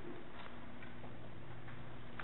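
Meeting-room tone: a steady low hum with a few faint ticks and taps.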